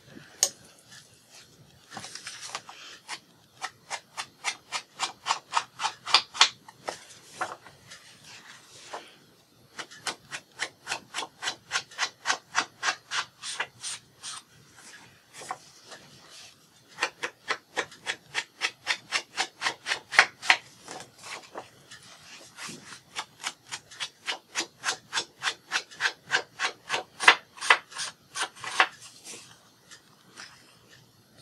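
An ink blending tool rubbed against paper in quick repeated strokes, about three a second, inking the paper. The strokes come in several runs of a few seconds each, with short pauses between.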